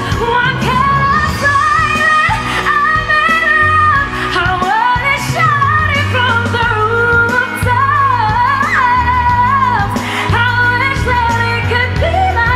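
Female pop vocalist singing a ballad with band accompaniment: held notes with vibrato and quick melismatic runs over a steady bass.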